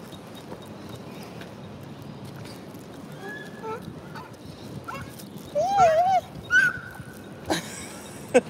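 A baby vocalizing in a pram: a few short high squeaky sounds, then a louder wavering coo about six seconds in and a brief high squeal after it, over a quiet outdoor background.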